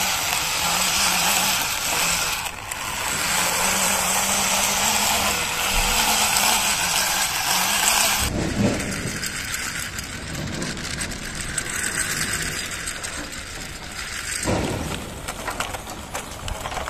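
Plastic toy vehicles pushed by hand along a rough painted concrete ledge: the hard plastic wheels roll and rattle in a steady scraping noise. The sound changes about eight seconds in as a different toy is rolled, and again near the end.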